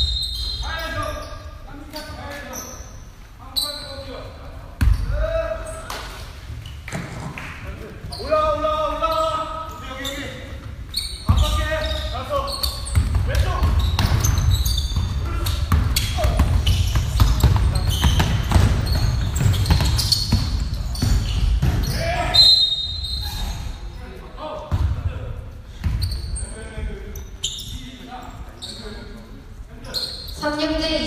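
Basketball game play in an echoing gym: a ball dribbling and bouncing on the court in irregular knocks, with players' shouts and brief high squeaks now and then.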